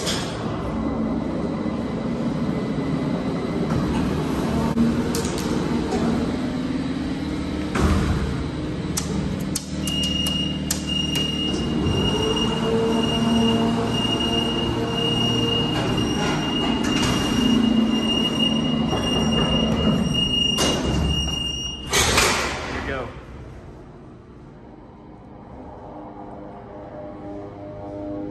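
Hydraulic freight elevator running during a trip, its pump motor giving a loud, steady rumble and hum through the car. A thin high whine joins about ten seconds in. Near the end the noise falls away as the car stops.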